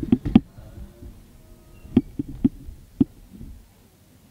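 A series of sharp knocks or taps: a quick cluster of four right at the start, then four more spaced out around two to three seconds in, as a musical tone fades out.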